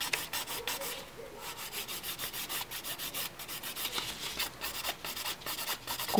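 Hand nail file rasping quickly back and forth over a cured gel nail overlay, several short even strokes a second, with a brief pause about a second in. This is the final hand-filing of the built-up modelling gel.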